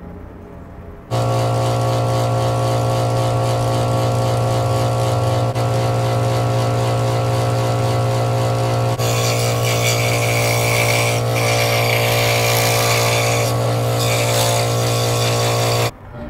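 Craftsman scroll saw switched on about a second in, its motor and reciprocating blade running with a steady hum. From about halfway, the blade cutting through thin wood adds a raspy hiss. The sound cuts off suddenly at the end.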